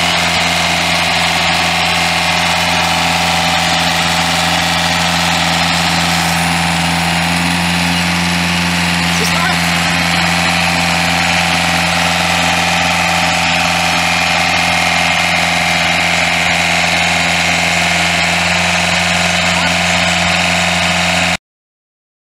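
48 hp Yanmar diesel engine of a tracked post-driver machine running at a steady, unchanging speed while the machine tracks across grass on its hydraulic drive. The sound starts and cuts off abruptly.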